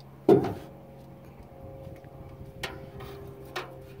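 A fishing rod and reel being worked on a boat: one sharp knock about a third of a second in, then faint clicks and knocks from the reel and rod handling over a low steady hum.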